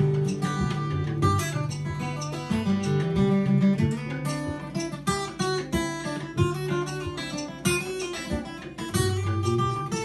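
Solo acoustic guitar strummed and picked, an instrumental passage with a steady rhythm and a moving bass line.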